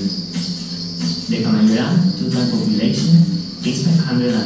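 Insects chirping in a steady, high continuous chorus, with men's voices talking underneath, heard from a documentary soundtrack played over room speakers.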